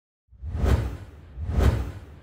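Two whoosh sound effects of a logo intro, about a second apart. Each swells up and falls away with a deep rumble beneath, and the second trails off slowly.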